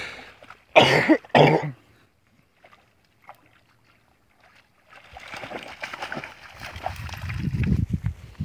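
A person coughs twice about a second in. From about five seconds on come footsteps and rustling through dry grass.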